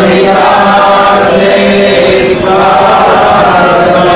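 Devotional mantra chanting in long, held notes, with two short breaks.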